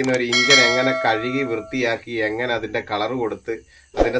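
A man talking, with a short bell-like chime ringing over his voice for about a second and a half near the start: the sound effect of an on-screen subscribe-button animation.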